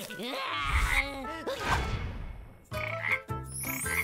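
A cartoon vampire character's wordless, low, gliding vocal sounds with a rumble underneath for the first two and a half seconds. After a short dip, light cartoon music with repeated chime-like hits starts about three seconds in.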